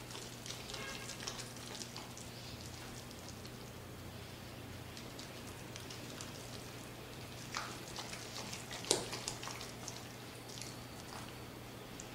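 Red rubber spatula stirring a thick, wet mashed-potato mixture in a coated pot: faint soft squelching and scraping, with a couple of sharper clicks of the spatula against the pot about two-thirds of the way in.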